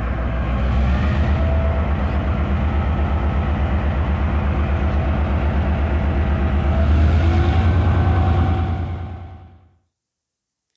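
Diesel locomotive engine running with a deep, evenly pulsing rumble, swelling a little near the end before fading out.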